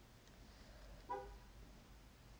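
Near silence: room tone, with one brief, faint pitched tone a little after a second in.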